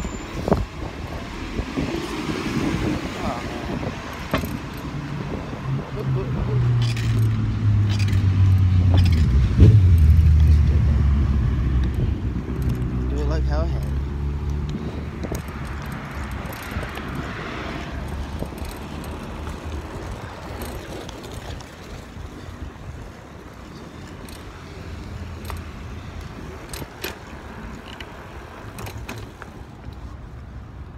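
A motor vehicle passing on a street: its low engine hum builds, is loudest about ten seconds in, then fades away over steady traffic noise. Light clicks and rattles come through now and then.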